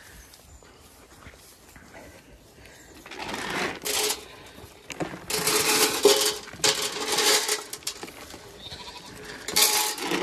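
Zwartbles sheep bleating while feed pellets are poured rattling from a sack into a metal trough, in several bursts from about three seconds in.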